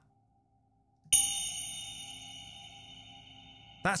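Electronic crash-cymbal-like hit from Ableton's DS Clang drum synth through flangers and reverb, struck once about a second in and ringing with a slowly fading metallic shimmer of steady high tones.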